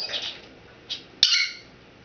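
Timneh African grey parrot giving a short, high-pitched squawk about a second in, opening with a sharp click. A fainter chirp comes just before it.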